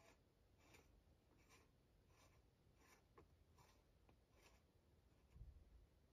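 Near silence, with faint scratchy rubbing about every two-thirds of a second as a bulb's screw base is twisted by hand into a plastic lamp socket, and a soft knock near the end.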